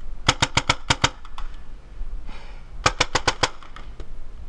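Paintball marker firing two rapid strings of about six or seven sharp pops each, roughly seven shots a second. The strings come about a second and a half apart, and each is followed by one straggling shot.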